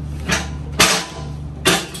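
Two loud knocks a little under a second apart, over steady background music: the pallet jack's rear wheels bumping up the rubber ramp of a pallet jack stop and settling into it.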